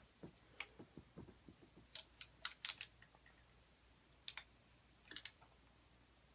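Faint, sharp plastic clicks from handling a selfie stick's phone clamp and fittings: a quick run of about five clicks around two seconds in, a close pair a little after four seconds, and a short cluster a little after five seconds.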